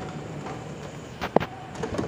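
Plastic top cover of an Epson inkjet printer being pulled upward off its clips: one sharp snap about one and a half seconds in as a clip lets go, then a few lighter clicks, over a steady low background rumble.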